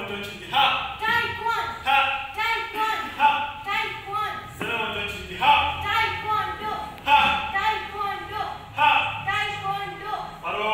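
A high-pitched voice talking continuously in short, falling phrases, with no words the recogniser could make out, echoing in a large hall.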